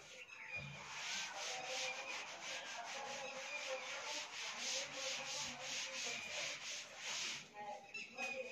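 A chalkboard being wiped with an eraser: quick, repeated back-and-forth rubbing strokes that start about half a second in and stop shortly before the end.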